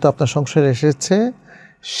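A man speaking in Bengali in a lecture, then a short pause and a sharp intake of breath near the end.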